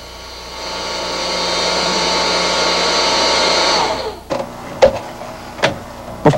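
Small fan of a homemade stove-top hair dryer blowing air through tubes heated on a gas burner. It builds up over the first second, runs steadily, then is switched off about four seconds in and winds down with a falling whine. A few light clicks follow.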